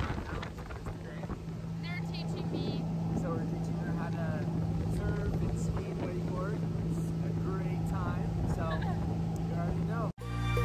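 Motorboat engine running steadily with a low, even drone.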